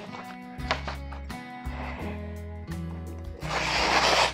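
A knife blade slicing through a sheet of paper near the end: a short papery hiss from the Cudeman Boina Verde Cadete's factory edge, a cut clean enough to show a very good edge. Background music plays throughout.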